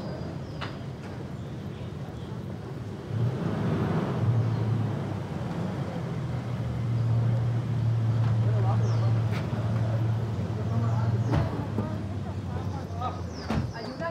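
An Isuzu Rodeo SUV's engine running with a steady low hum, with street traffic around it. The hum cuts off near the end as the engine is switched off, followed by a couple of sharp clicks as the car door is unlatched and opened.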